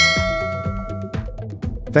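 A bright bell-like chime from a subscribe-button animation's notification bell, ringing out and fading over about the first second and a half, over steady background music.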